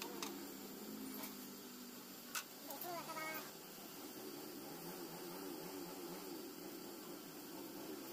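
A plastic motorcycle visor handled on a wooden table, with one sharp click about two and a half seconds in as it is set down. A brief pitched cry follows just after, over faint steady room noise.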